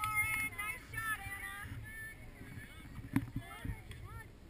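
High-pitched shouts and calls from players and spectators at a girls' soccer game, too far off to make out, strongest in the first two seconds. A single sharp knock comes about three seconds in, over a low rumble.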